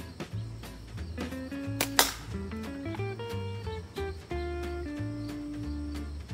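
Background music with a steady bass beat, and about two seconds in a single sharp crack of a slingshot shot from the Bushy Beaver Newt slingshot.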